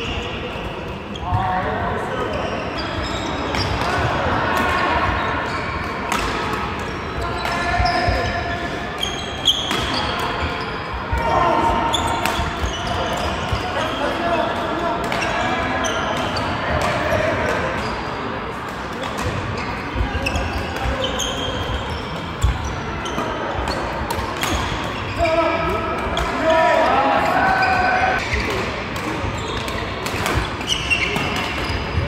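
Badminton doubles rallies in a large echoing sports hall: repeated sharp clicks of rackets striking the shuttlecock and footfalls on the wooden court, with voices and chatter from players around the hall.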